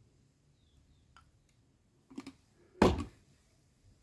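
Quiet handling with a few light clicks, then a short, loud knock of hard plastic a little before three seconds in, as the plastic water bottle and the nozzle used as a funnel are handled.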